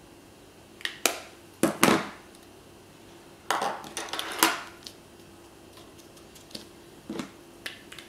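Makeup items being rummaged through: small hard cases, pencils and tools clattering and clicking as they are picked up and set down, in a few bursts with lighter clicks near the end.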